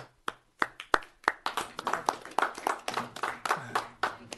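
A small group applauding: a few separate claps in the first second, then quicker, overlapping clapping from several people.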